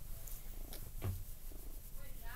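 Domestic cat purring while held close to the microphone, a low steady rumble, with a soft handling bump about a second in.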